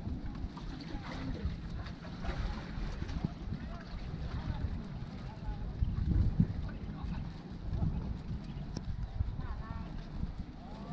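Wind buffeting the microphone while walking: an irregular low rumble with gusts, strongest about six seconds in.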